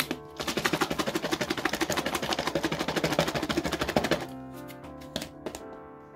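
Salad rattling inside a lidded clear plastic cup shaken fast, about ten shakes a second for nearly four seconds, then stopping. Soft background music plays under it.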